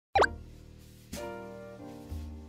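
A quick, loud 'bloop' sound effect with a sliding pitch, followed by intro music: a sustained note or chord comes in about a second in, and another just before the end.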